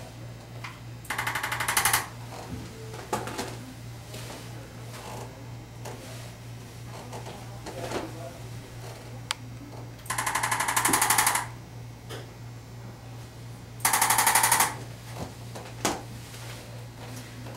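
Arthrostim handheld chiropractic adjusting instrument firing three bursts of rapid, evenly spaced mechanical taps, each about a second long: one near the start, one about ten seconds in and one about fourteen seconds in. It is tapping the patient's back and hip as a chiropractic adjustment.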